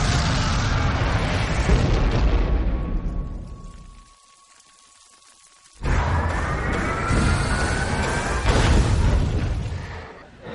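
Film trailer sound design of the street breaking up: heavy rumbling and crashing that fades out about four seconds in to a quiet stretch with a thin steady tone, then a sudden loud blast about six seconds in with rising tones over it, mixed with music.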